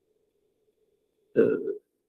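A pause in a man's speech with only a faint steady hum, broken about one and a half seconds in by one brief, low vocal sound from him, a wordless throat noise before he speaks again.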